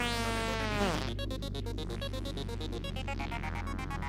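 Electronic synthesizer music: a pitched synth tone glides downward and drops away about a second in, giving way to a rapid, buzzing pulsed synth texture over a steady low drone.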